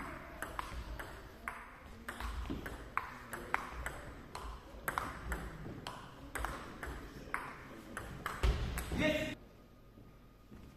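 Table tennis rally: the celluloid ball clicks sharply off the rackets (medium pimples and anti-spin rubber) and the table, about two hits a second, each click echoing in a large hall. Near the end comes a louder thump with a brief pitched sound.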